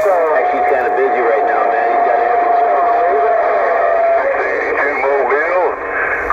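Cobra 148 CB radio receiving a crowded skip channel: several distant stations' voices overlapping, thin and garbled through the narrow radio audio. A steady whistle sits under the voices from about half a second in until about four seconds.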